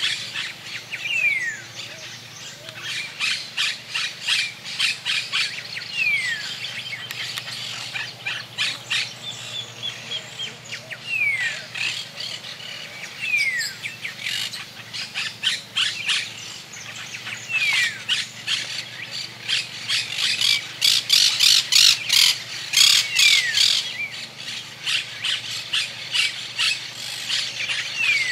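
Monk parakeets calling: rapid, harsh squawking chatter in long runs, the begging of a fledgling being fed regurgitated food by an adult. A few short descending whistles are mixed in every few seconds.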